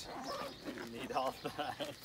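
Voices talking in the background, quieter than the nearby narration, with no distinct non-speech sound standing out.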